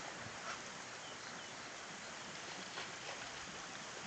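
Quiet outdoor ambience by a waterway: a steady, faint background hiss with no distinct event standing out.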